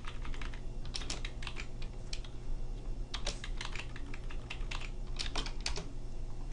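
Computer keyboard keystrokes: irregular runs of quick clicks while a spreadsheet formula is typed in, over a low steady hum.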